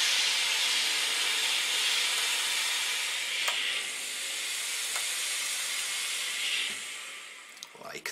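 Steam iron giving off a steady hiss of steam as it presses fabric, dying away near the end.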